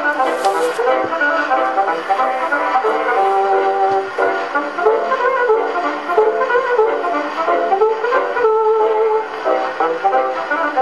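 Hot jazz band playing on a 1924 Edison Diamond Disc recording, with brass instruments carrying the lead. The sound is thin and boxy, with no bass, and there is a brief patch of surface hiss about half a second in.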